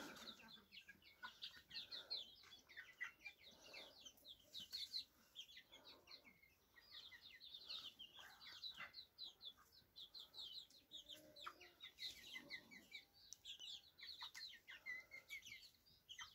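A brood of young chickens peeping: a faint, continuous stream of many short, high chirps overlapping one another.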